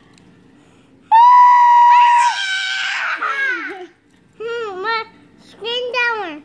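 A woman screams on request: one loud, high scream starting about a second in, held steady for about a second, then wavering and falling away before the four-second mark. Near the end come two short high vocal sounds from a young child.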